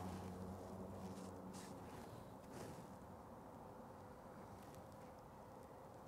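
Near silence: faint outdoor background with a few soft ticks, and no shot.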